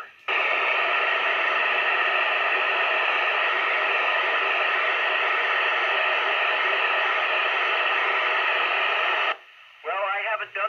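Steady, loud FM radio hiss from a Yupiteru multi-band receiver on the ISS downlink frequency, 145.800 MHz. The hiss is an open squelch with no signal, while the space station is not transmitting between the astronaut's answers. It cuts off suddenly near the end.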